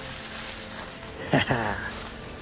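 Dry leaf litter rustling and scraping under a whitetail deer carcass being dragged on a rope, with a short burst of a man's voice, falling in pitch, a little over halfway through.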